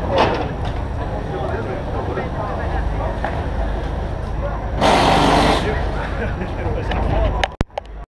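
Rally service-area ambience: a steady low hum with background chatter from the crew working on the car. About five seconds in comes a loud hiss lasting under a second. The sound cuts off abruptly just before the end.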